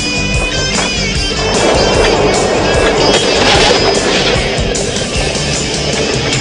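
Skateboard wheels rolling, coming in about a second and a half in, over a rock song with guitar and vocals.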